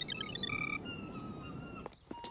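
A short cartoon musical sting with twinkling chime notes that ends about half a second in. Then a few whistling bird calls sound over soft outdoor ambience.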